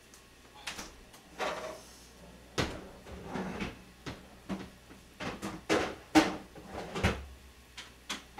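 A series of sharp knocks and clatters from kitchen things being handled off-camera, about a dozen irregular strikes over several seconds, the loudest a little past halfway.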